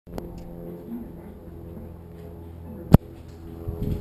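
A steady low hum runs under the window, broken by one sharp, loud knock about three seconds in, followed near the end by rustling that fits hands touching the camera.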